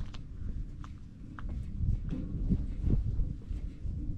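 Wind buffeting the microphone, with a few light, irregular knocks and clanks of shoes and hands on the rungs of a steel ladder as a man climbs down the side of a metal tank.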